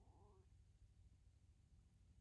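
Near silence: low steady room hum, with a faint, brief pitched sound in the first half second.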